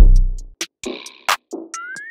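Trap instrumental beat: a deep 808 bass hit at the start that fades over about half a second, with crisp hi-hats and a clap. Near the end a short pitched sound glides upward.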